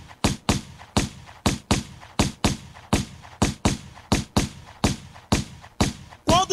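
A bare electronic drum beat in a funk carioca style: kick-heavy percussive hits in a syncopated pattern, about three a second, with no melody or vocals.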